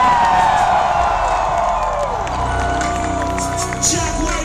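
Concert crowd cheering and screaming over loud, bass-heavy music from the stage sound system, with long falling cheers close by in the first half.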